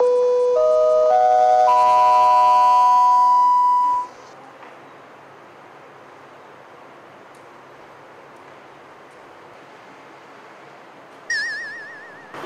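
Electronic chime playing four rising notes one after another, each note ringing on under the next, all dying away about four seconds in, in the manner of a school bell chime. A faint steady hiss follows, and near the end comes a short warbling electronic tone.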